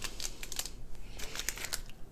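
Small plastic zip-lock bags of round diamond-painting drills being handled on a table: light crinkles and clicks in a few short clusters.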